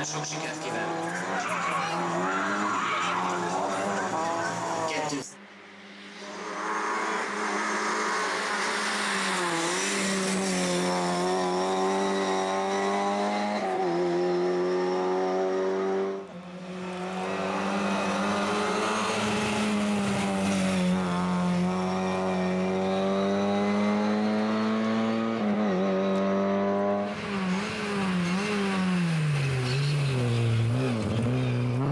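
Lada rally car engines revving hard through the gears, the pitch climbing and dropping with each change, in three separate stretches that break off suddenly about five and sixteen seconds in.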